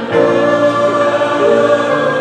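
A church congregation singing together in long held notes, with the pitch changing about once a second.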